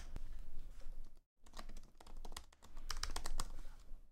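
Computer keyboard typing: irregular quick keystrokes, with a brief pause a little after one second and a faster run of keys around three seconds in.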